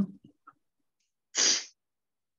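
A single short, sharp burst of breath noise from a person, a little under half a second long, about one and a half seconds in. It comes right after the tail of a murmured 'mm hmm'.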